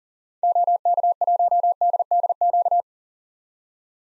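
Morse code sent at 40 words per minute as a single steady-pitched tone keyed in quick dots and dashes, starting about half a second in and lasting about two and a half seconds: the call sign OK1DDQ repeated.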